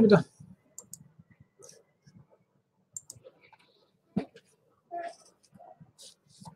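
A few faint, scattered clicks of a computer mouse, with one sharper click about four seconds in.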